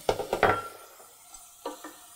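Slotted wooden spoon knocking and scraping in a stainless steel pot of sautéed sliced mushrooms as flour is worked in, over a faint sizzle on low heat. The spoon strokes come in a quick cluster in the first half second or so, then only a couple of faint knocks near the end.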